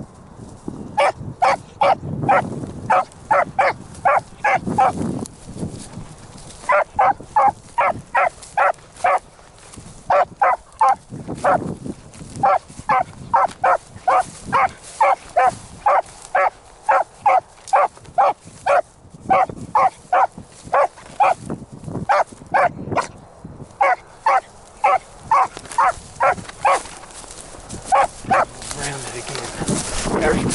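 A beagle baying on a rabbit's scent trail: short, pitched barks in runs of several, about three a second, with brief pauses between the runs.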